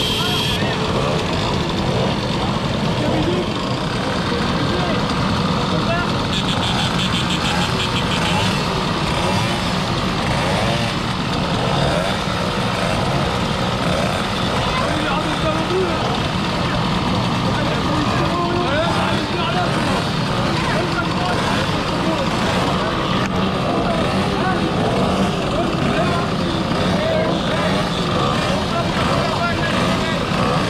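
A crowd of two-stroke mopeds idling and blipping together in a steady, dense drone.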